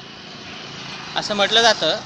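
A steady rushing background noise grows louder over the first second. About a second in, a person starts speaking over it.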